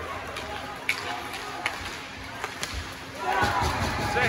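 Ice hockey play in a rink: a few sharp knocks of stick and puck over a steady background, then a voice calling out near the end.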